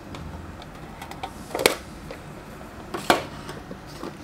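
Handling noise from a metal watercolor tin being closed and art-supply boxes being moved in a drawer: two light knocks, about a second and a half in and about three seconds in, with a few faint ticks between.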